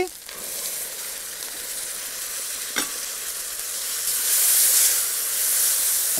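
Onion-and-spice masala sizzling in hot oil in a wide pan as tomato puree is poured in and stirred with a wooden spatula. The sizzling grows louder about four seconds in, and there is a single knock near the middle.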